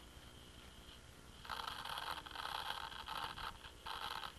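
Faint scraping and rustling of objects being handled, starting about a second and a half in and lasting about two seconds, with one more short rustle near the end.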